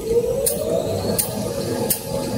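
Kitchen towel maxi roll paper machine running: a low mechanical rumble with sharp ticks about every 0.7 seconds and a whine that rises in pitch during the first second, then holds.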